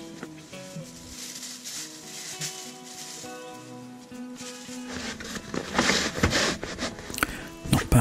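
Background music with long held notes; from about five seconds in, rustling and knocking of gear being handled and stowed in a small boat's cockpit.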